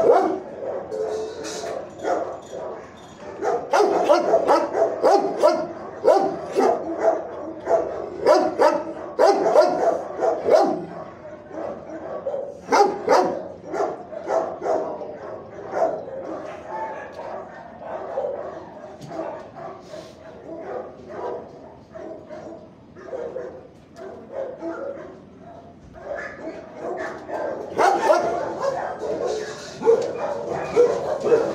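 Dogs in shelter kennels barking repeatedly, loud in spells, easing off for a stretch past the middle and picking up again near the end.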